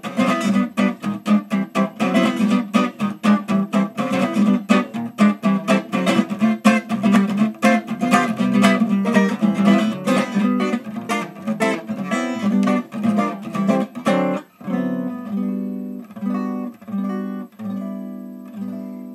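A 1951 Kay archtop acoustic guitar strummed in a quick, steady rhythm of chords, the big-band jazz kind of sound it was made for. About fourteen seconds in, the fast strumming stops and gives way to a few slower chords left to ring.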